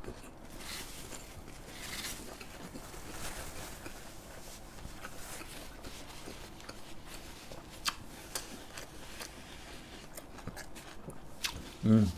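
Faint closed-mouth chewing of a lettuce wrap of grilled pork belly with kimchi, with a few soft clicks in the second half.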